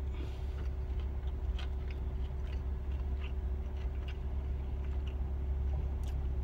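A man chewing a bite of a burrito, faint small wet clicks from his mouth, over a steady low hum inside a car's cabin.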